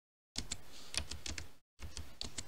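Keys being typed on a computer keyboard: two short runs of clicks as decimal numbers are entered, each run cutting off sharply to dead silence.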